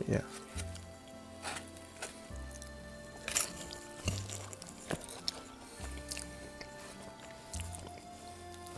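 Wet chewing and biting sounds from a mouthful of okonomiyaki, with short sharp clicks scattered through. Quiet background music with a slow bass line runs underneath.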